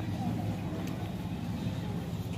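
A steady low rumble with faint voices underneath.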